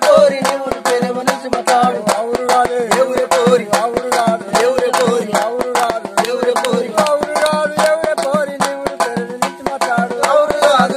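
Men singing a Telugu kolatam (stick-dance) folk song. Steady, fast hand claps several times a second keep the beat.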